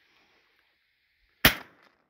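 A single shotgun shot about one and a half seconds in, sharp and loud, dying away within half a second.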